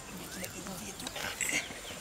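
Quiet vocal sounds with gliding pitch, a louder one about a second and a half in.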